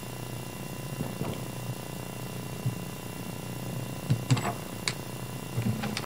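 Steady low room hum in a meeting room, with a few light knocks and clicks. The loudest knocks come in a cluster about four seconds in, with more near the end.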